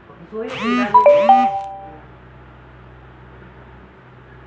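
A two-note electronic chime, a high tone stepping down to a lower one about a second in, ringing briefly, over a short burst of quickly warbling pitched sound.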